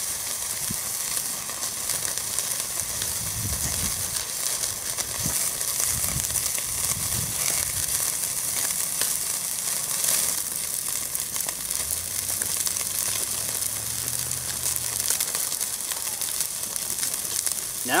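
Steak sizzling steadily on a grate set directly over a chimney starter of blazing lump charcoal, a constant hiss with faint crackles. A faint low hum joins in briefly past the middle.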